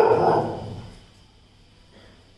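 A pet dog gives one loud, drawn-out bark that fades out about a second in.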